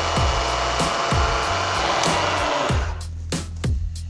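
Bridgeport milling machine drilling a small hole in a metal part, a steady hiss of spindle and cutting that stops about three seconds in. Background music with a deep, regular bass beat runs underneath throughout.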